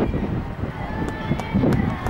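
Wind rumbling on the microphone, with a few soft thuds from a horse's hooves cantering on arena sand and faint voices in the background.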